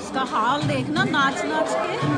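Several people talking and chattering at once in a large hall, with some high, wavering voices among them.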